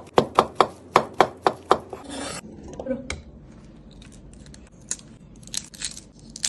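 Cleaver chopping fast on a wooden cutting board, about three to four strokes a second, stopping about two seconds in. A short scrape follows, then light crackling clicks of a boiled egg's shell being cracked and peeled near the end.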